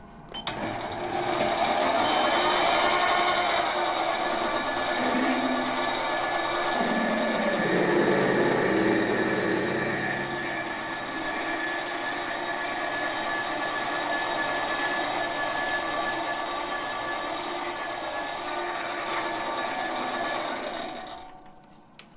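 Metal lathe running while a 10 mm twist drill cuts into the end of a spinning metal piston blank: a steady cutting and machine-running sound that fades in at the start and out near the end.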